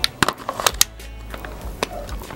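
A string of sharp plastic-and-metal clicks as a magazine is pushed into an East Crane HK416D airsoft rifle and its replica bolt catch is worked. The clicks come a few at a time through the first second, with one more near the end.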